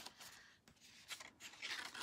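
Stiff cardstock being folded and handled by hand: faint papery rustles and creasing sounds, a little louder near the end.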